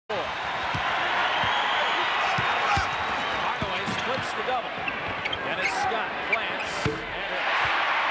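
A basketball bouncing on a hardwood arena floor, a series of low thumps under steady crowd noise, with short squeaks of sneakers on the court.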